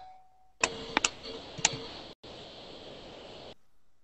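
A few sharp clicks and short beeps over a steady hiss from an open call microphone line. The hiss starts suddenly about half a second in and cuts off suddenly after about three seconds.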